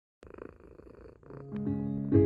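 A cat purring, a rough fluttering sound that starts suddenly just after the beginning and breaks off briefly before the end. About one and a half seconds in, a low sustained music chord swells in underneath it.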